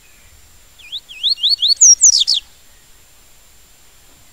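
Yellow-bellied seedeater (papa-capim) singing one phrase of the 'tui-tui' song type. The phrase opens with a quick run of about five up-sweeping whistles and ends in a few louder, higher descending notes, about a second and a half in all.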